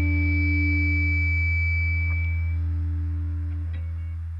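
The final chord of a punk rock song, held on guitar and ringing out as it slowly fades. A thin high tone drops out about two and a half seconds in.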